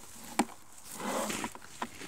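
Two sharp knocks about a second and a half apart, with a short rustle between them, as the stone weight and wooden threshing sled are handled on the wheat.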